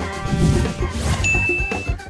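A single electronic ding, one steady high tone held for just over half a second, starting a little past the middle, over background music with a low beat.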